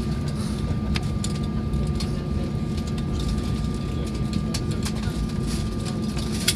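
Airbus A320 cabin noise while taxiing on the engines at idle: a steady low rumble with a thin constant tone above it. A few short sharp clicks are scattered through it.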